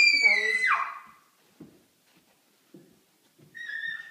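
A toddler's high-pitched squeal that slides down in pitch over the first second, overlapping a brief adult voice. A few faint soft thumps follow as she climbs carpeted stairs on hands and knees, and a second shorter high squeal comes near the end.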